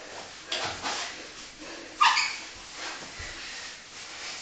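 Two grapplers breathing hard and grunting with effort as they roll, with bodies scuffing on the foam mats. The loudest sound is a short, sharp one about halfway through.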